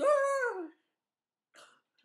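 A woman's voice calling out one drawn-out word, about three-quarters of a second long and dipping in pitch at the end, one of a run of repeated chant-like calls.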